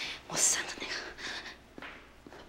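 A woman's breathy whispering and heavy breathing, loudest in a hissy breath about half a second in, with a few faint steps on the stairs as she climbs.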